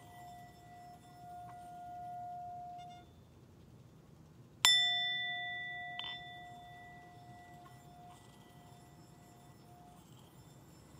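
Metal singing bowl played with a wooden striker. A ringing tone swells and fades as the rim is rubbed. Then, about halfway through, the bowl is struck sharply and rings with several overtones that die away slowly, with a lighter knock about a second later.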